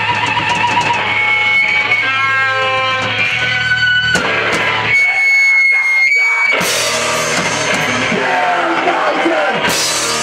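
Heavy rock band with electric guitar and drum kit playing; the guitar holds long, wavering lead notes, then a single high note rings on its own for a moment before the full band with crashing cymbals comes back in about six and a half seconds in.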